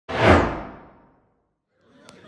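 A single whoosh sound effect for an animated channel logo, starting suddenly and fading away over about a second.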